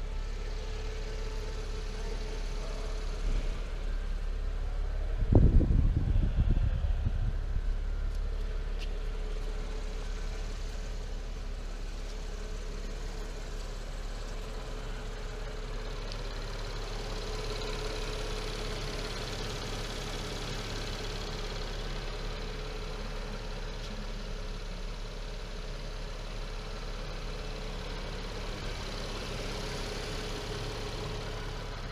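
Cadillac CT6's twin-turbo V6 idling with a steady low hum. About five seconds in there is a loud low thump with a short rumbling tail.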